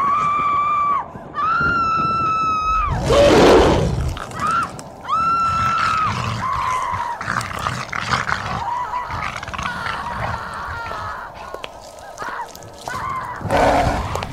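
Sound effects of a city in mayhem: several long, high-pitched held cries, a loud noisy crash-like burst about three seconds in, then shorter, fainter cries that fall away, with another burst near the end.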